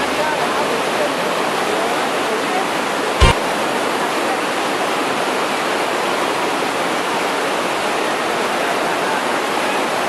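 Rushing white-water mountain torrent, a steady loud wash of water, with a single brief thump about three seconds in.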